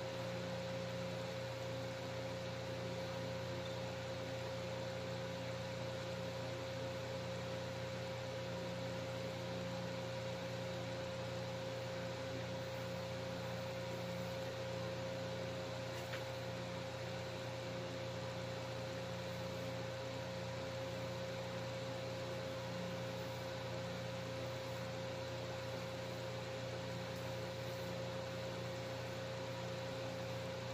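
A steady background hum and hiss with a constant mid-pitched tone, unchanging throughout: room or electrical noise, with no distinct events.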